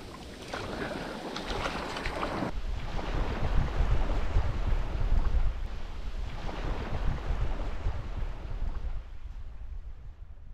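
Shallow surf washing and fizzing over sand. About two and a half seconds in, after a cut, it gives way to wind buffeting the microphone as a steady low rumble, with the wash of the waves behind it.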